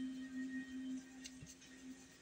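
A faint, steady low hum that fades out about a second in.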